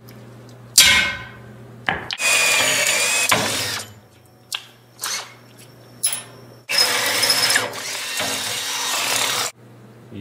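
Power drill boring plug-weld holes through a steel bed-frame angle iron: two long runs of drilling with a high whine, short bursts and clicks between them, and a sharp knock about a second in.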